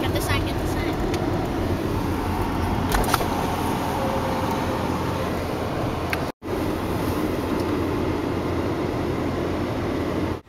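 Steady rumble of a car's engine and tyres heard from inside the cabin while driving slowly, cut off for a split second about six seconds in.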